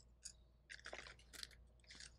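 Near silence with a few faint crinkles and clicks of plastic-wrapped packages being handled on a store peg rack.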